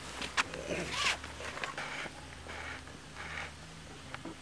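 Rustling and handling noise: several short swishes and a couple of light clicks over a low steady hum.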